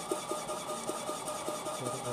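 Milk vending machine running steadily as it dispenses milk into a bottle, with a steady hum.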